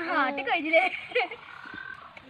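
A child's wordless vocal noises: a loud, falling-pitched squeal at the start, then shorter pitched sounds fading over the next second.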